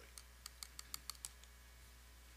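A quick, faint run of about eight light clicks, evenly spaced and lasting about a second.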